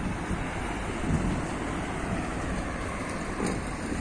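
Wind rumbling on the microphone over steady street traffic noise, an even low rush with no distinct events.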